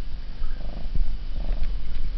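Siamese cat purring, a low steady rumble, with a few faint soft clicks.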